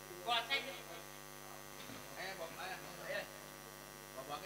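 Steady electrical mains hum and buzz from the microphone and sound system, with a brief louder voice about half a second in and softer indistinct voices about two to three seconds in.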